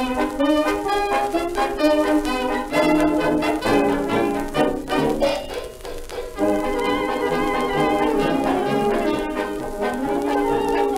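A 1920s–30s German dance orchestra playing a foxtrot from a 78 rpm shellac record, with brass to the fore. A faint surface hiss from the disc runs under the music.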